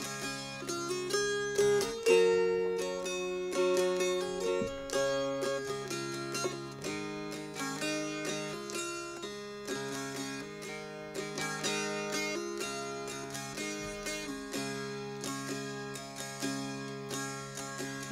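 Solo mountain dulcimer playing an instrumental introduction: a plucked melody over steady drone notes.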